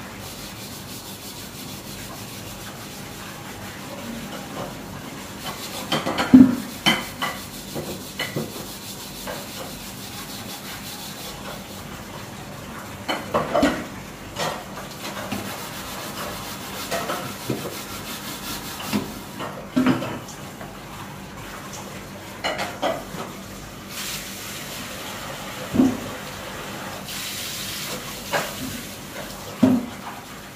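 Scrubbing the inside of a large black metal wok by hand: a steady rubbing, broken by a few sharp knocks of the pan, the loudest about six seconds in.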